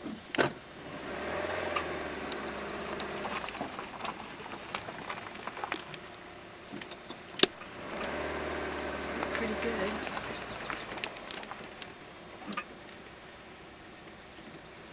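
A motor hums in two spells of two to three seconds each, starting and stopping abruptly, with a single sharp click between them.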